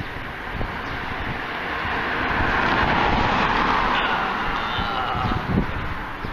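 Road traffic noise: a vehicle passing by, its noise swelling to its loudest about halfway through and then fading.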